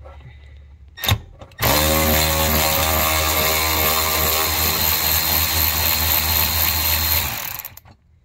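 Cordless electric ratchet with an 8 mm socket running at a steady pitch for about five and a half seconds, backing a bolt out of a vehicle's cloth underbody skid plate, then stopping shortly before the end. A short knock comes about a second in, just before the motor starts.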